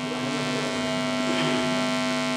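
Steady electrical mains hum from the microphone and sound system, a low buzz with many evenly spaced overtones and no change in pitch.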